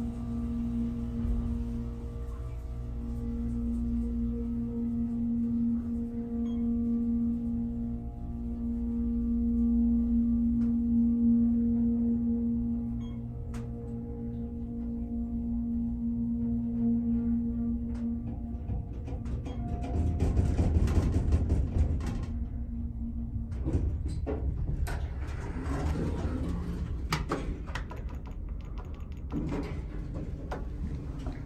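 Otis hydraulic elevator rising: the pump's steady hum runs for about eighteen seconds and then cuts out. The car then shakes with a rough rumble as it comes into the top floor, a shake the rider takes for a fault Otis should fix. Scattered knocks and clicks follow near the end.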